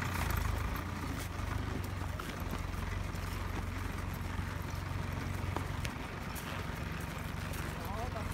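Horse walking on grass, its hoof steps faint, over a steady low hum.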